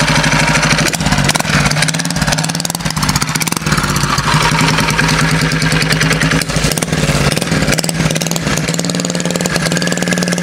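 Honda GX120 single-cylinder four-stroke engine on a homemade motorized bicycle, running and revving as the bike pulls away through its CVT. The engine is running rich after an adjustable main jet was fitted.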